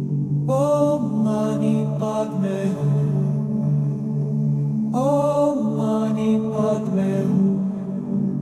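Background music: a low sustained drone with a voice chanting in a mantra style. The vocal phrases come in twice, about half a second in and again about five seconds in, each opening with a short upward slide in pitch.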